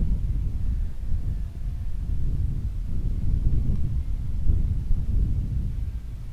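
Wind buffeting the microphone: a gusty low rumble that rises and falls.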